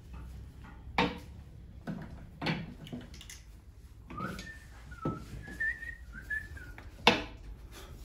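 A person whistling a short, wavering few-note phrase for about two and a half seconds in the middle, set among a few sharp clicks and taps.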